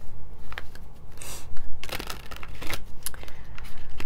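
Tarot cards being shuffled and handled by hand: irregular sharp card clicks and slaps, with short riffling rushes about a second in and again near three seconds.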